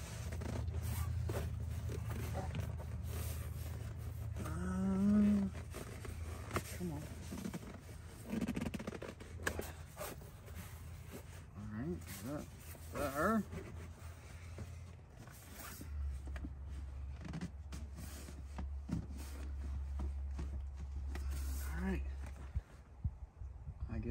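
Rustling and scraping of a fabric seat cover being pulled over a truck seat and strapped down, with scattered short clicks and a few brief muttered vocal sounds, over a low steady hum.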